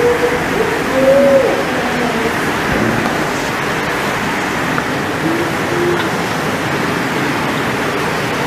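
Steady hiss of background noise in the recording, with a couple of faint murmured words, one about a second in and one about five to six seconds in.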